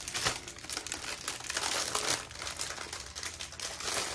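Plastic wrapping crinkling as a plastic-wrapped roll of diamond-painting drill bags is handled, in irregular crackles.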